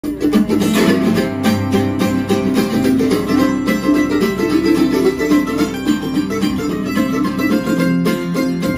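Mandolin and acoustic guitar duo playing a bluegrass tune live, quick picked mandolin notes over strummed guitar chords.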